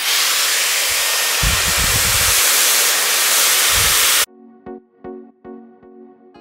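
Dyson Airwrap hair styler with its smoothing brush attachment running: a loud, steady rush of blown air, with low rumbles around one and a half to two and a half seconds in. It cuts off suddenly about four seconds in, and music with evenly spaced notes follows.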